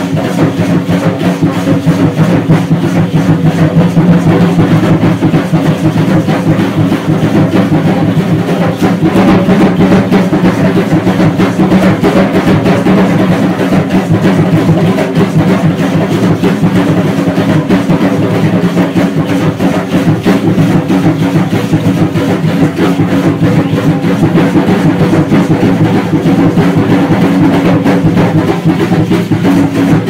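Loud, continuous drumming with a steady beat and a dense rattling percussion layer, the music for an Aztec (Mexica) ceremonial dance, running without a break.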